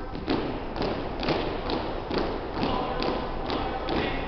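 A drill platoon's shoes striking a hardwood gym floor in unison as the cadets march in step, about two footfalls a second, with the echo of a large gymnasium.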